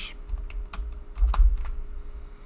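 A few keystrokes on a computer keyboard, five or so separate sharp clicks, with a dull low thump a little over a second in. The keys enter a screenshot shortcut.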